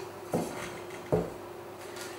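Two soft knocks about a second apart as a spatula and a stainless steel mixing bowl are handled over the counter.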